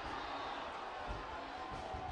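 Faint, steady football-stadium ambience from a sparse crowd, with a couple of soft low thumps.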